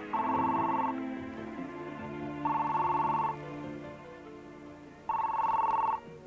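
Telephone ringing three times, each ring just under a second long with a warbling tone, over soft background music.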